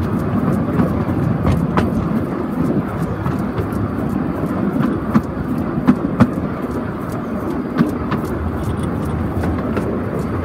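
Steel wheels of a narrow-gauge bogie flat wagon rolling along the rails, a steady rumble with scattered sharp clicks and knocks.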